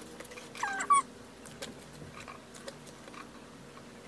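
Paper banknotes being handled and set down on a desk, with faint rustles and light taps. Just before a second in, a brief high-pitched animal-like call drops in pitch.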